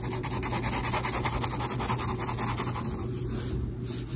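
Mechanical pencil lead shading on paper, drawn with the side of the lead: fast back-and-forth hatching strokes making a rapid scratchy rasp, many strokes a second, easing off about three seconds in.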